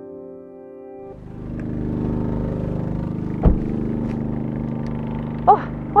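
Soft background music, then from about a second in a steady low hum and gusty rumble of wind on the microphone outdoors beside parked vehicles. There is a single sharp knock about halfway through.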